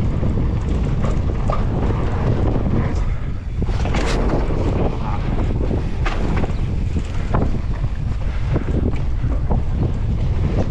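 Wind buffeting the microphone of a camera on a descending mountain bike, with the tyres rolling over dirt and frequent short knocks and rattles from the bike. Near the middle there is a brief lull followed by a sharp clatter.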